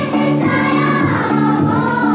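A children's choir singing together to an electronic keyboard playing a steady, repeating chord pattern.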